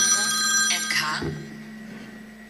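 A steady, high electronic ringing tone, telephone-like, that cuts off less than a second in. After it comes quieter hall room tone with a low steady hum.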